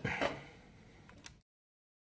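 Handling noise from a sheet-metal switching power supply case and its perforated cover: a click, then a short scraping rattle, and a faint tick about a second later.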